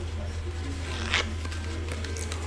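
Faint, low speech over a steady low electrical hum, with one short hissing noise about a second in.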